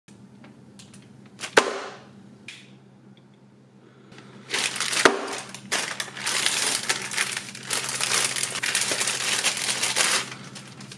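A plastic poly mailer bag being torn open and crumpled by hand: a few sharp clicks at first, the loudest about a second and a half in, then a dense crinkling rustle from about four and a half seconds in. A faint low hum sits underneath.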